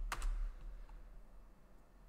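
A few keystrokes on a computer keyboard, clustered in the first half second.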